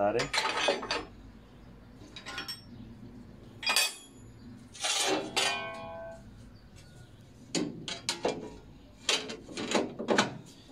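Irregular metallic clinks and knocks as a circular-saw blade's arbor nut is tightened on a table saw with a wrench and the blade is handled. One clink about five seconds in rings on briefly.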